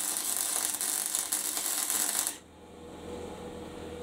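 Electric arc welder laying a test bead after being reassembled: a steady crackling hiss of the arc that cuts off suddenly about two seconds in, leaving a faint low hum from the machine. This steady crackle is the sound a welder is judged by, by ear, to tell whether it is set and running right.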